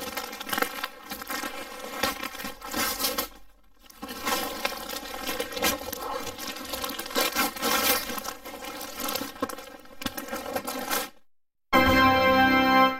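Wrapping paper tearing and crinkling as a present is unwrapped, over steady background music. It runs in two stretches with a short break about three and a half seconds in, and stops about a second before the end.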